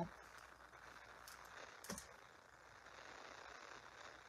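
Near silence: faint room hiss with a couple of soft handling clicks, about one and two seconds in, as a roll of glue dots is pressed against a twine bow.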